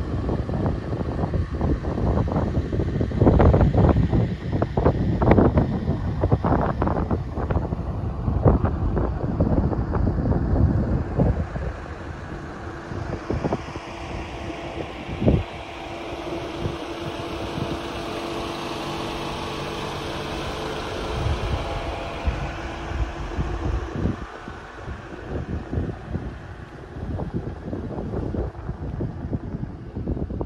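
Strong wind buffeting the microphone in gusts, heaviest over the first ten seconds or so. It eases into a steadier rushing with a low steady hum through the middle, then turns gusty again near the end.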